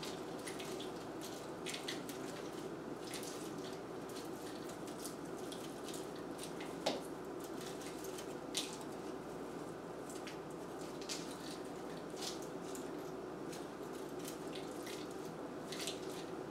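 Dry grapevine wreath and artificial greenery rustling and crackling under the hands as a sprig is worked in and wired in place, with scattered small crackles and two sharper clicks about seven and eight and a half seconds in, over a steady faint room hum.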